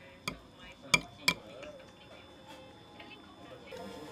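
A metal spoon clinking against a ceramic serving plate while scooping food, three sharp clinks within the first second and a half. Faint music comes in near the end.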